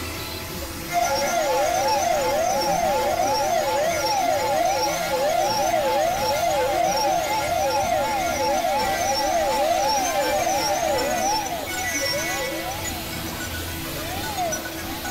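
Siren-like warbling sound in a layered experimental music mix: two interweaving pitches sweep rapidly up and down, about two sweeps a second, over a steady low drone. It comes in suddenly about a second in and the sweeps slow near the end.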